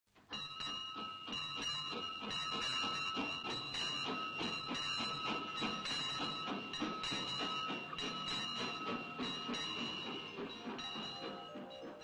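Small steam locomotive chuffing in a quick, even rhythm, with a steady high tone running over it; the chuffing eases off near the end.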